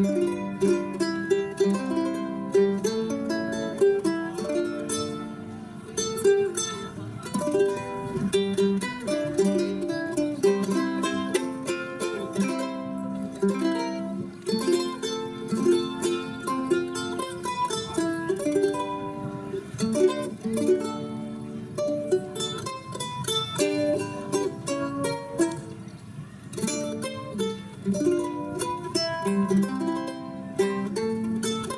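Eight-string ukulele played solo, its strings paired in octaves on C and G and doubled on E and A, giving a bright, chorused plucked sound. It plays a slow country ballad with a quick run of picked notes over held chords.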